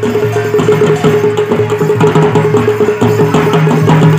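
Traditional folk music: fast, dense drum strokes over one steady held high note.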